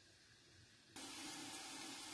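Silence, then from about a second in a faint, steady sizzle of vegetables frying in oil inside a lidded pot on a gas hob.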